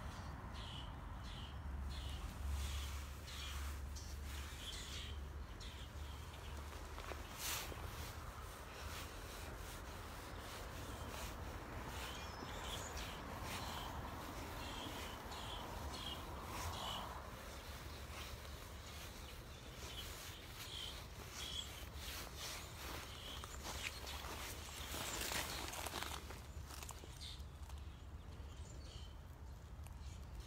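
Outdoor birdsong: many small birds chirping and chattering in short repeated calls, over a low steady rumble.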